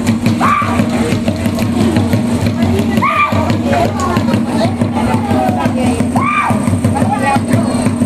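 Accompaniment for a Bantik war dance: a steady, fast drum rhythm, broken by a loud shout that rises and falls about every three seconds.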